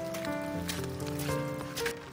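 Background music: sustained notes that change every half second or so, with a few light percussive ticks.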